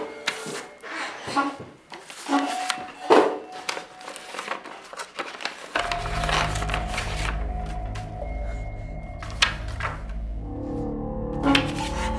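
Paper rustling and sharp taps as a manila envelope is opened and photographs are pulled out. A low, steady droning film score comes in about halfway through.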